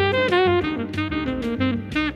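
Saxophone playing a quick jazz melodic line of short notes, with guitar and bass accompaniment underneath.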